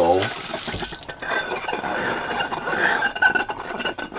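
Water from a kitchen tap runs onto a ceramic bowl and stops abruptly about a second in. Fingers then rub the rinsed bowl, giving repeated squeaks, the sign that the grease has been stripped and the bowl is squeaky clean.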